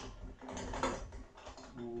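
Irregular light clicking and rattling of the plastic and metal handle parts of an artificial-grass vacuum-brush as a fitting is worked through the holes in its handle.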